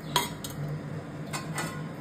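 A few light clinks of kitchenware, the sharpest just after the start and two more about a second and a half in, over a steady low hum.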